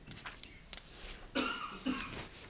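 A person coughing twice in quick succession, about one and a half seconds in, after a few faint clicks.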